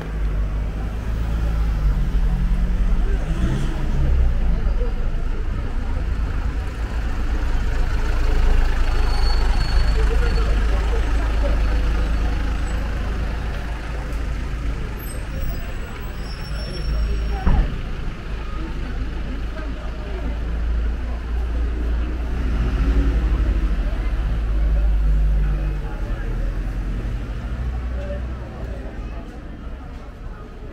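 Town street ambience: a steady low rumble of motor traffic with people chatting in the background, and one short knock about halfway through.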